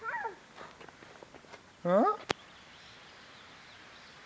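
Small white dog giving a short high whimper at the start, followed a couple of seconds later by a sharp click.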